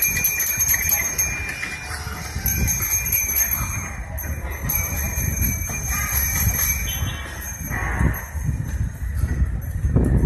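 Small bells jingling in a fast, continuous shimmer, which breaks off for a few seconds about a second and a half in and then resumes, over a low rumble of street noise and wind on the microphone.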